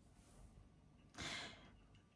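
Near silence, broken about a second in by one short breath, a sigh, from a woman pausing between sentences.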